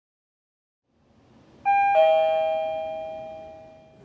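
A two-note descending chime, a 'ding-dong': a higher note, then a lower one about a third of a second later. Both ring on and fade away over about two seconds.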